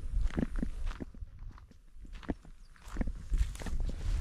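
Footsteps on dry grass and sandy ground: a run of irregular steps, a quieter spell in the middle, then a few more steps near the end.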